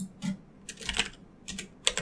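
Typing on a computer keyboard: several separate keystrokes at an uneven pace, a few close together around the middle.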